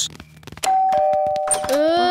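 Two-note ding-dong doorbell chime: a higher steady note and then a lower one, each ringing on.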